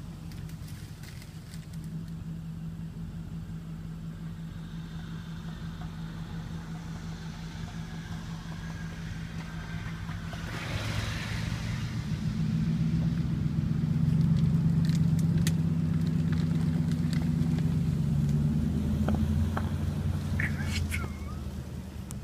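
Nissan Titan's 5.6-litre V8 running steadily, then growing louder about halfway through as the truck pulls hard on a tow strap to rip a shrub out by its roots, and easing off near the end. There is a brief noisy rush about ten seconds in, and a few sharp clicks late on.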